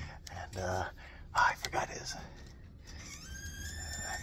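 A man's soft laughter and breathy, whispered vocal sounds, with a few clicks of phone handling. Faint steady high tones come in about three seconds in.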